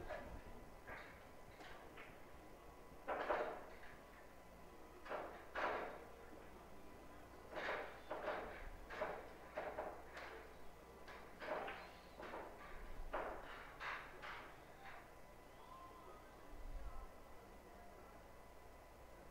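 Faint, scattered knocks and clacks of pool balls and cues being struck on the tables, about fifteen short hits at irregular intervals.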